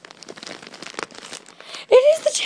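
Packaging crinkling and crackling as it is handled and pulled open, with many rapid small crackles. A voice breaks in right at the end.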